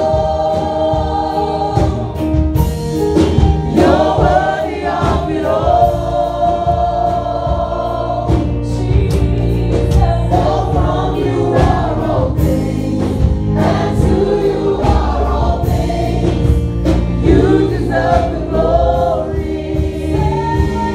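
Gospel choir singing over a band with bass and drums, a steady beat throughout.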